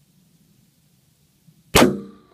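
A single .300 WSM rifle shot about a quarter of a second before the end: a sharp crack that then dies away.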